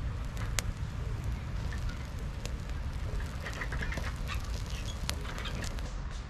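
Small fire of dry twig kindling crackling as it catches, with a few sharp pops, the loudest about half a second in and near five seconds, over a low steady rumble.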